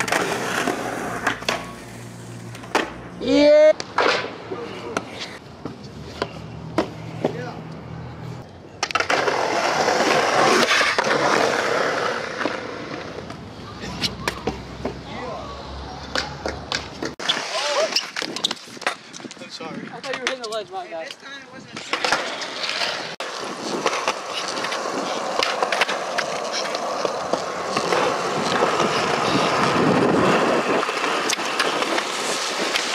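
Skateboard urethane wheels rolling on concrete in two long stretches, with many sharp clacks of the deck's tail popping and the board landing.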